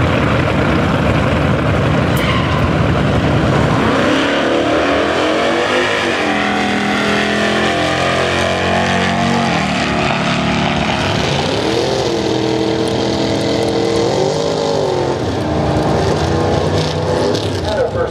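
Two drag-racing cars launching side by side at full throttle and accelerating away down the strip. The sound is loudest in the first few seconds, then the engine notes climb, drop back and climb again as the cars pull away.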